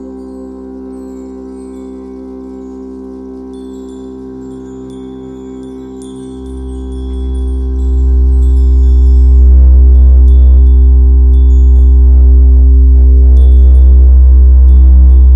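Ambient relaxation music: a steady sustained drone with scattered high, tinkling chime notes. About six seconds in, a deep bass drone swells in and the music grows much louder.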